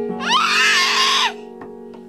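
A young child's high-pitched shriek, lasting about a second, rising in pitch and then dropping off, over piano notes left ringing.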